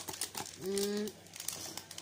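Clear plastic bag crinkling as it is handled and pulled from a cardboard box, with a short, steady hummed 'mm' from a woman's voice a little past halfway through.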